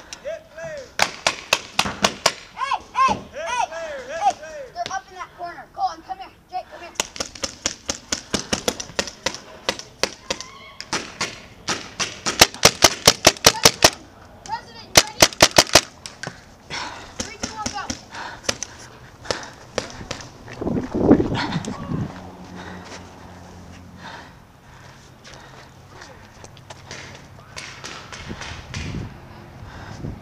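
Paintball markers firing: scattered sharp pops throughout, with a fast run of about a dozen shots a little before halfway and another short string just after. Shouting voices in the distance early on, and a heavy thud about two-thirds of the way in.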